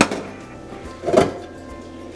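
Stainless-steel stand-mixer bowl knocking against the mixer as it is handled and lifted off: a sharp knock at the start and a duller knock about a second in, over quiet background music.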